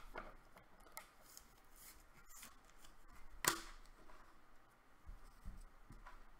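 Trading cards being handled: faint rustling and light taps, with one sharper click about three and a half seconds in.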